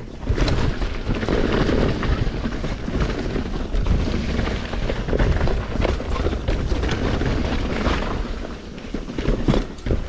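Commencal mountain bike rolling fast down a dry dirt trail: tyres crunching over dirt and roots, with frequent clicks and knocks from the bike rattling over bumps, under a steady low rumble of wind on the microphone.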